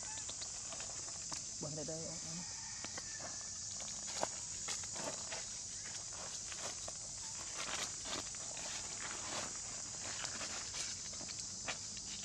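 Light footsteps and rustles of macaques moving over dry leaf litter, heard as scattered soft ticks, over a steady high-pitched drone. A brief voice sounds about two seconds in.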